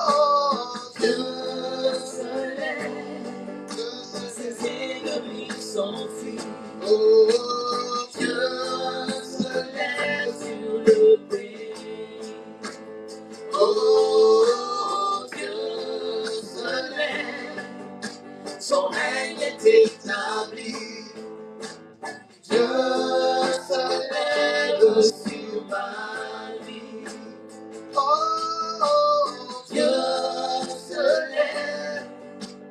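Live gospel worship song: singers leading a congregation song over a band accompaniment, sung in phrases with short breaths between them.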